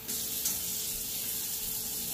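Sausage frying in a hot pan: a steady sizzle that starts suddenly.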